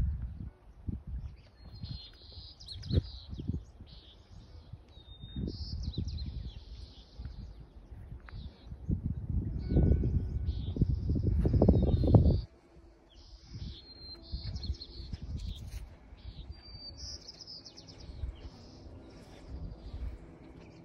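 A songbird singing repeated short phrases, each a brief whistled note followed by a buzzier burst, over a low rumbling noise on the microphone that swells toward the middle and drops away suddenly about twelve seconds in.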